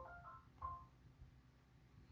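Near silence, with a few faint, short steady tones at different pitches in about the first half-second.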